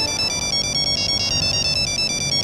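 Mobile phone ringtone: an electronic melody of quick, high alternating beeps that starts suddenly and keeps ringing, an incoming call.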